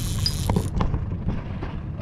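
Steady low rumble of a fishing boat's motor running, with a brief high hiss near the start and a few sharp clicks from handling the rod and reel while a king salmon is being played.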